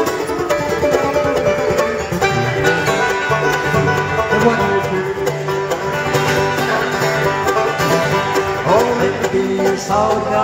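Live bluegrass played on mandolin, banjo and acoustic guitar, the three strumming and picking together at a lively, even pace.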